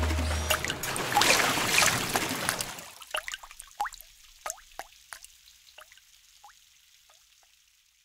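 Cartoon water sound effects as a song ends: a fading wash of splashing and spattering, then a run of single water-drop plinks that come further apart and grow fainter until they die away.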